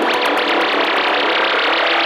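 Electronic UK bass/techno track: a dense synthesizer texture with quick pitch sweeps and no bass.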